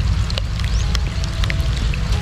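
Steady low rumble of wind buffeting the microphone, with scattered short high chirps over it.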